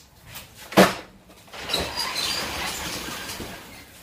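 A cardboard box set down hard on a conveyor ramp with a loud thud just under a second in, followed by about two seconds of steady rattling as boxes run down the ramp.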